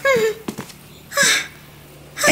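Cartoon mouse's short wordless vocal sounds: a quick falling squeak at the start, a small click, then a breathy huff about a second in.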